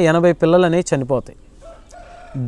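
A chicken calling faintly in the background near the end, a short, steady pitched call.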